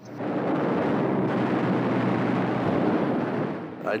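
Loud, steady roar of a fighter plane's engine with rapid machine-gun fire mixed in, starting abruptly and fading just before the end.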